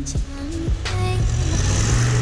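Ford F-250 Super Duty pickup's engine pulling under load while its tires churn through deep snow, with a rumble and a hissing spray that grow louder about a second in. Background music with a beat plays over it.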